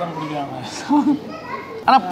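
Only speech: people talking at the table, several voices in short bursts.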